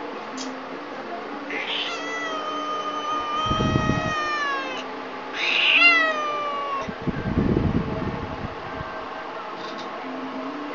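Domestic cat yowling twice: a long drawn-out meow held steady and then falling at its end, then a louder, shorter one that slides down in pitch, each followed by a low rough rumble. It is an irritated cat talking back, which the owner calls rude and bad-tempered.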